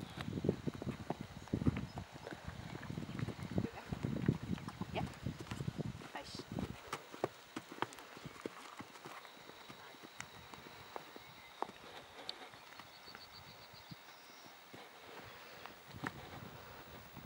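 Horse walking on a dirt paddock, its hoofbeats heard as soft irregular knocks. A louder low rumbling noise runs through the first six seconds.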